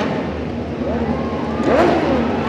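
MotoGP four-cylinder race motorcycles running on the starting grid, a steady drone of many engines with revs rising and falling near the end.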